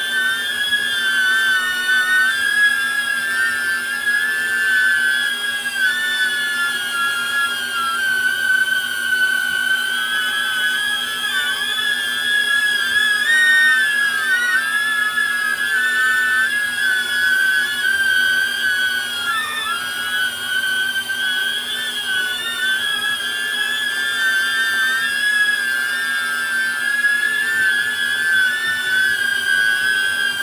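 DJI Neo mini drone hovering on Gemfan D51 51mm ducted propellers: a loud, steady high-pitched whine with a higher overtone above it, wavering slightly in pitch. It reads about 80 dB on a sound meter up close.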